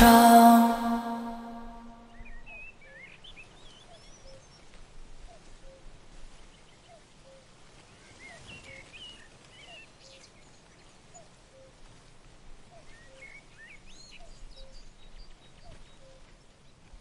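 The last chord of a pop song dies away over the first two seconds, leaving faint birdsong ambience: scattered short chirps and twitters, with a soft low note repeating about once a second.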